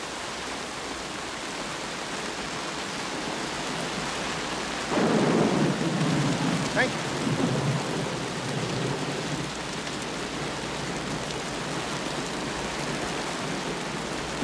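Steady rain falling, with a low roll of thunder that starts about five seconds in and fades out over the next few seconds.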